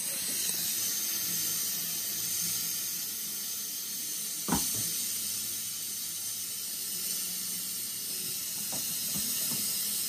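A steady hiss with one sharp click about four and a half seconds in, heard during a dental tooth extraction.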